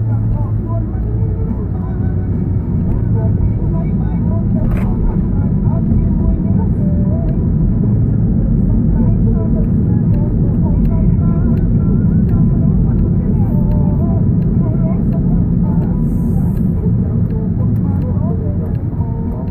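Steady low rumble of a car driving, with engine and road noise heard from inside the cabin, and faint indistinct voices underneath.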